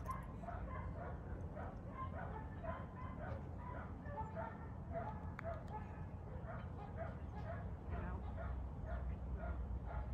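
A dog barking repeatedly in quick, even succession, about three short high yips a second, without a break.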